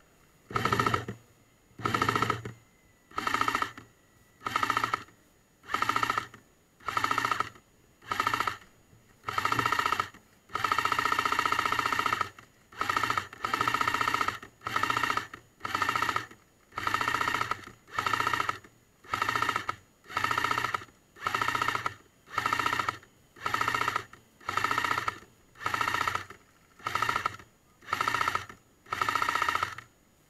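Airsoft light support weapon firing short automatic bursts, each a rapid string of shots about half a second long, about once a second. One longer burst of nearly two seconds comes about eleven seconds in.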